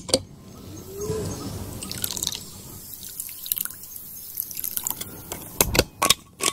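Water trickling and dripping as it is poured from a thermos bottle into a cup. A few sharp knocks come near the end.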